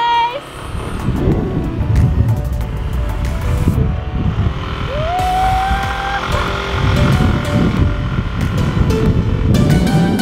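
Small motorcycle running as it rides along carrying two people, with wind rumbling on the microphone.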